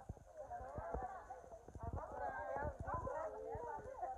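Several women's voices chatting in the background, with irregular footsteps of shoes on a paved path.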